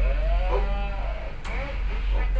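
Steady low drone of a tugboat's engines. Over it, a drawn-out, wavering voiced sound rises and falls through the first second and returns briefly near the end, like a man's long 'ooh'.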